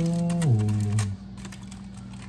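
Aluminium foil crinkling in quick, irregular crackles as a foil cooking packet is pulled open by hand. A man's drawn-out 'ohh' of appreciation sounds over it, dropping in pitch and ending about a second in.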